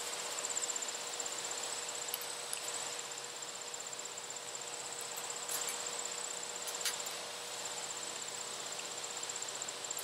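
A steady high-pitched insect trill, cricket-like, fast and pulsing, with a faint low hum beneath it. A few faint clicks as a USB-C cable plug is handled and pushed into the flashlight's charging port.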